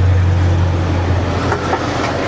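A steady low rumble with a few faint clicks in the second half.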